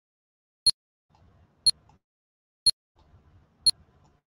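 Countdown timer's tick sound: short, sharp clicks exactly once a second, four of them.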